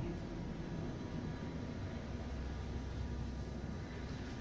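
Steady low background hum of an indoor room, with a few faint thin steady tones above it and no distinct event.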